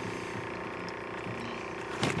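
A steady mechanical hum with several held tones under a faint hiss, unchanging throughout.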